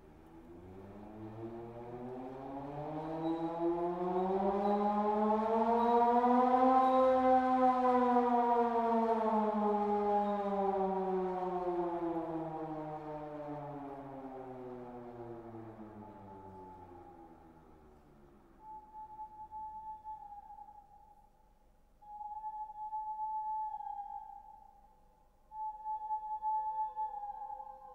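Electroacoustic music: a siren-like tone with many overtones slowly rises in pitch and loudness, peaks about seven seconds in, then slowly falls and fades. From about three-quarters of the way through, a steadier high tone comes in three short spells.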